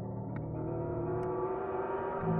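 Layered synthesized drone: a steady low hum under tones that slowly rise in pitch and swell louder, with a few scattered ticks.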